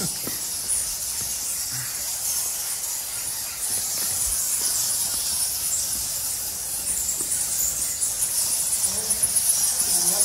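A steady high-pitched hiss that turns into a fast, even pulsing chirr near the end.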